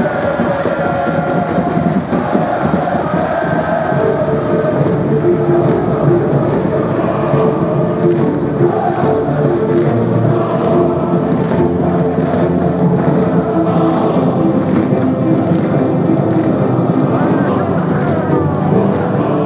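Music playing over a football stadium with a large crowd singing along, loud and steady, with faint regular beats.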